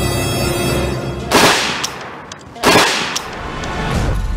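Two loud bangs about a second and a half apart, each with a short fading tail, heard just after tense background music ends.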